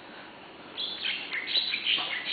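A small bird chirping: a series of short, high chirps that starts about three-quarters of a second in.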